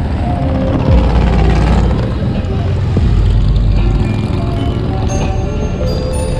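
A group of cruiser motorcycles riding past with a steady low engine rumble, with background music playing over them.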